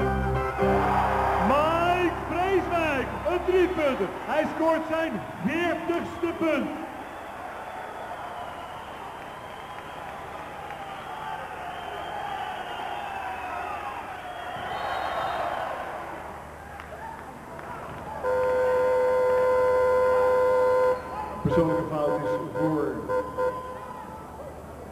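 Basketball shoes squeaking repeatedly on the court floor during play over arena crowd noise, then a loud, steady buzzer lasting about three seconds, starting about eighteen seconds in, marking a foul and a timeout.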